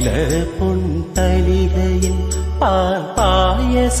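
A man singing a long, wavering melodic line with no clear words over a backing track with a deep, steady bass that drops out briefly a few times.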